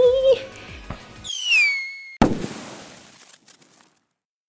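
Logo-sting sound effect: a whistle falling in pitch for about a second, then a sudden firework-like bang that dies away over about a second.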